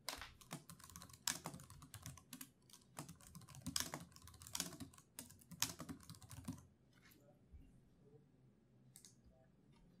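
Typing on a computer keyboard: a quick, uneven run of key clicks for about the first seven seconds, then a couple of single clicks near the end.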